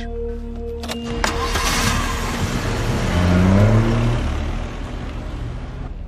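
Dramatic background music, with a car engine revving up in the middle.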